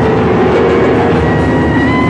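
Live small-group jazz: saxophone, electric keyboard and drum kit playing together, with the saxophone holding long, steady notes over the band.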